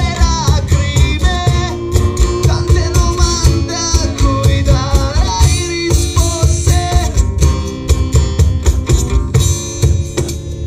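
Live acoustic band playing: two acoustic guitars strummed with a cajón keeping the beat. A male voice sings over them for the first several seconds, then the guitars and cajón carry on alone near the end.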